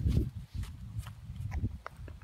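Wind rumbling on the microphone in uneven gusts, strongest just after the start, with a few faint clicks scattered through.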